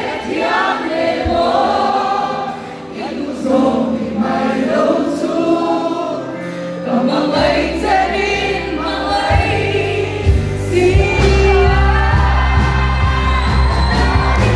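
Live worship song: a woman sings lead through a microphone over a band with drums and electric guitar. About halfway through, the bass and drums come in heavier and the music grows fuller and louder.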